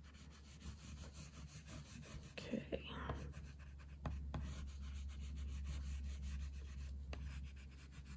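Oil pastel rubbed back and forth across paper in faint, quick scratchy strokes.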